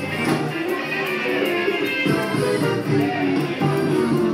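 A live band plays upbeat dance music, with guitar prominent over a steady beat.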